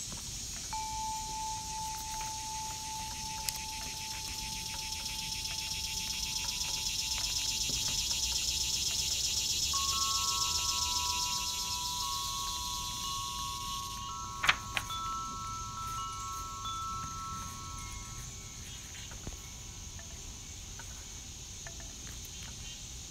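Wind chimes ringing in long, held tones, a second group of higher notes joining about halfway, over a steady high insect buzz that swells and then fades. A single sharp click comes about two-thirds of the way through.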